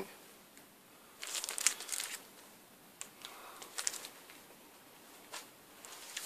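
Faint crinkling rustle of a vinyl LP in its clear plastic outer sleeve being handled, in several short bursts.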